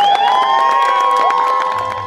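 A crowd cheering, with several long drawn-out "woo" shouts held over scattered clapping. Near the end, orchestral string music comes in.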